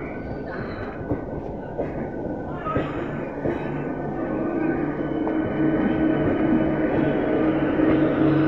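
ICF-built electric multiple unit local train running past close by: a steady rumble of wheels on the rails with occasional clicks, growing louder in the second half.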